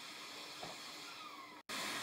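Steady fan noise with a faint hum under it. Near the end it drops out for an instant and comes back a little louder.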